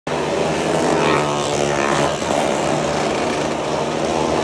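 Several motorcycle engines running together as the bikes circle the wooden wall of a well of death, making a loud, steady, dense drone.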